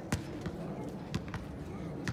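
A few short, sharp thuds of impacts, the loudest just after the start and two more about a second in, over a low steady outdoor background.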